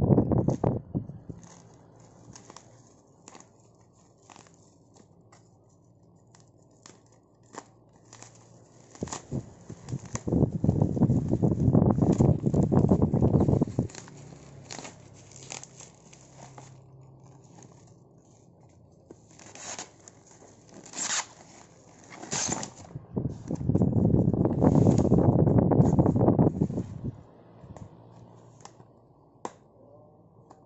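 Black plastic wrapping and packing tape being slit with a utility knife and torn open, crinkling and crackling, with two long loud stretches of tearing and rustling around the middle and near the end, and scattered clicks and rustles between.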